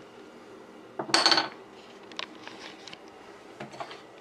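A cooking utensil clanks against a frying pan about a second in, with a short metallic ring, followed by a few lighter clicks and knocks of utensil on pan.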